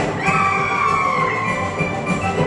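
Russian folk orchestra of plucked strings and piano playing a dance tune. About a quarter second in, a high note slides up and is held for over a second above the accompaniment.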